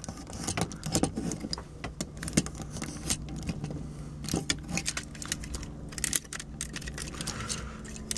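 Hard plastic clicks and rattles of a Transformers Soundwave action figure being handled, its leg and foot parts pulled out and snapped into place, a run of irregular sharp clicks over a steady low hum.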